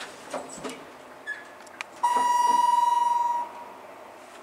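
Elevator car's electronic signal giving one steady beep, about a second and a half long, starting about halfway in and cutting off abruptly. A few faint clicks come before it.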